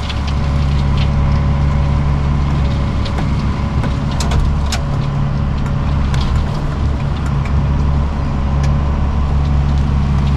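A tractor's diesel engine runs steadily under load while it drives a side-mounted rotary cutter, a constant low drone with a few faint clicks in the middle.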